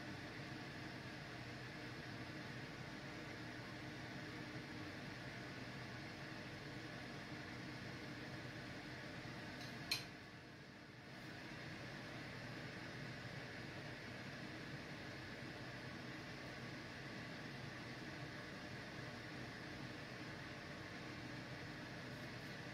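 Steady faint whir of a fan in the kitchen, with one sharp click about ten seconds in, after which the whir briefly drops away.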